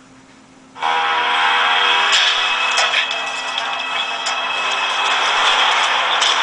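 Film soundtrack playing through a Nokia N95 8GB smartphone's built-in speakers, cutting in suddenly about a second in after a short quiet. It sounds thin, with no deep bass.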